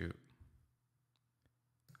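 A few faint, sharp clicks from a computer mouse and keyboard being worked, widely spaced over the two seconds.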